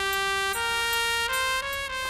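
Comic background score: a single wind instrument holds a note and steps up in pitch three times, four sustained notes in a rising line.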